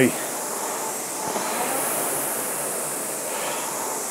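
Concept2 rowing machine's air-resistance flywheel whooshing steadily as the rower keeps a slow, even stroke rate, the sound swelling gently once near the middle.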